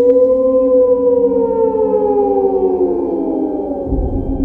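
Outro soundtrack effect: a tone swoops up sharply, then slides slowly and steadily down in pitch over about four seconds, siren-like, over a steady ambient drone. A low rumble comes in at the very end.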